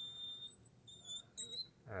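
Felt-tip marker squeaking on a glass lightboard as a long line is drawn: thin, high-pitched squeals that jump between pitches.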